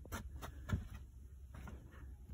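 Footsteps on plywood boards laid over attic insulation: a few soft thuds and knocks, the loudest about three-quarters of a second in.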